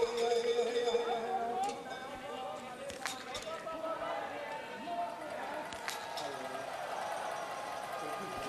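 Biathlon stadium ambience: a distant voice, like a public-address announcer, over crowd noise, with a few sharp cracks about two, three and six seconds in.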